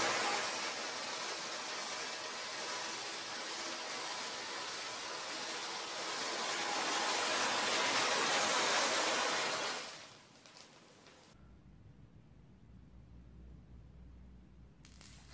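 Bundles of match heads flaring up in a chain reaction, set off by a drop of sulfuric acid: a steady rushing hiss of burning for about ten seconds that fades out, then near silence with a faint low hum.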